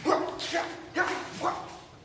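A man giving a run of short, sharp martial-arts shouts, four yells about half a second apart, as he swings a sword.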